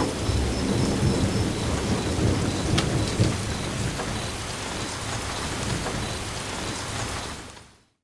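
Steady rush of rain over a low rumble like distant thunder, with a few sharp crackles, fading out just before the end.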